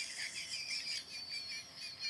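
High-pitched squeaky chirping: a run of short, wavering squeaks that thins out near the end.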